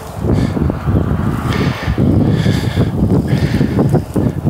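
Wind buffeting the microphone in loud, uneven gusts, a deep rumble that rises and falls.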